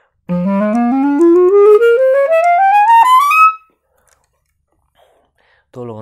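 Clarinet playing the G harmonic minor scale upward in quick, even steps, climbing more than two octaves in about three seconds, then stopping.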